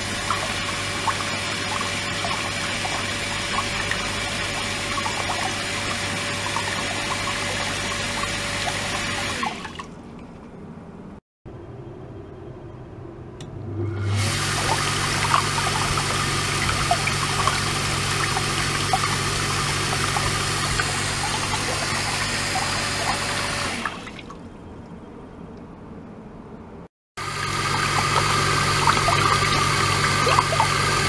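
Electric motor-driven circulation pump running, with a steady low hum, sending water through a hose into a plastic tub where it churns and splashes with air bubbles. It runs in three stretches, dropping away to quieter sound at about ten seconds and again at about twenty-four seconds, and its hum is higher in the later stretches.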